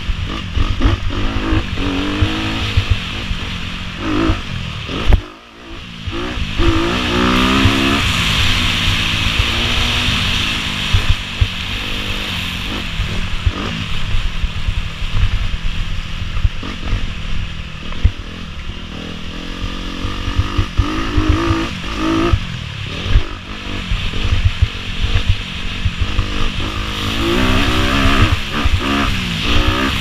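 Dirt bike engine running hard on a wooded trail, its pitch rising and falling again and again with the throttle. It cuts back sharply for a moment about five seconds in.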